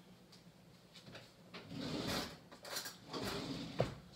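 Faint kitchen handling noises: two short scraping, rustling stretches about two and three seconds in, then a sharp click near the end.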